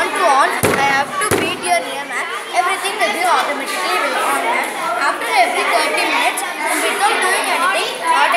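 Many voices talking at once, children's among them, echoing in a hall. Two sharp knocks come about half a second and just over a second in.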